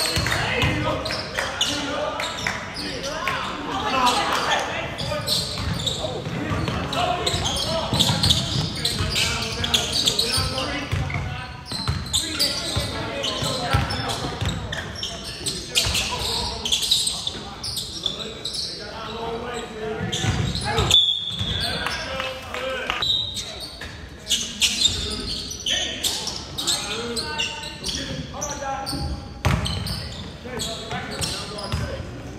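A basketball being dribbled on a hardwood gym floor during play, with many short sharp bounces. Indistinct voices of players and spectators echo in a large gymnasium.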